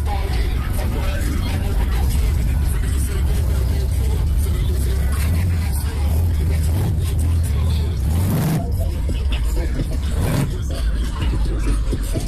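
A car engine idling with a steady low rumble, with people talking around it.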